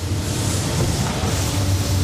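Steady city street noise: a low traffic rumble with a hiss over it.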